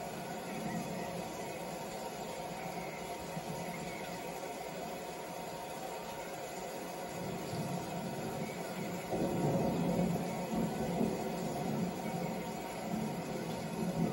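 Steady hiss with muffled, indistinct sound from a wrestling broadcast playing through a TV speaker, growing louder and more uneven from about nine seconds in.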